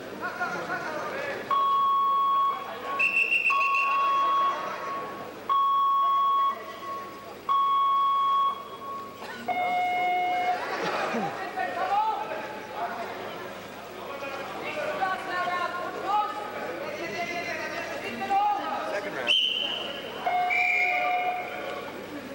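Hall noise of voices and chatter at a wrestling tournament, cut through by a series of steady electronic beeps about a second long, coming roughly every two seconds. Later, single steady tones at other pitches sound, including a high whistle-like one near the end.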